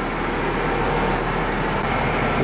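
KiHa 48 diesel railcars standing with their engines idling: a steady low hum under an even rush of noise.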